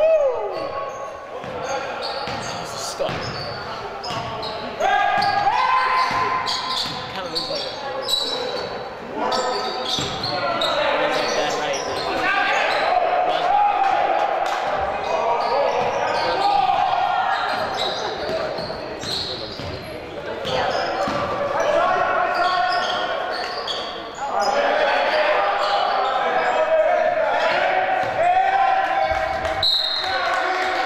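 Basketball game in a gymnasium: a ball dribbling on the hardwood floor, with players' shouting voices, all echoing in the large hall.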